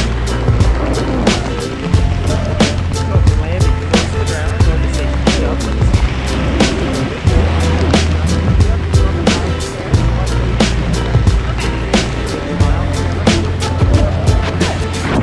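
Background music with a steady beat and a sustained bass line.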